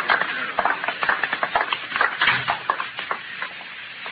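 Radio-drama sound effect of several men's boot footsteps walking away, a dense, irregular patter of steps that slowly fades.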